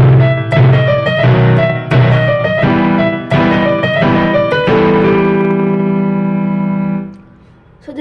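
Casio CT-X9000IN electronic keyboard played with its stage piano voice: a melody over repeated struck chords, ending on a held chord that rings for about two seconds and then cuts off about seven seconds in.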